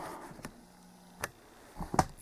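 A few sharp, light clicks and knocks, spaced out over a quiet room, with a brief faint hum in between.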